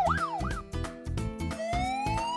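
A cartoon fire-truck siren sweeping up and down nearly three times a second cuts off about half a second in. About a second and a half in, a slower police siren wail starts rising. Background music with a steady beat plays throughout.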